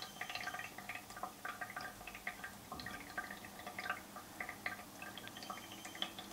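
Filtered water trickling from the small outlet hole of a Brita filter cartridge into the water in the pitcher below: a faint, irregular run of small drips and plinks, several a second. The water runs out slowly through the cartridge, the slow stage of filtering that takes a few minutes to finish.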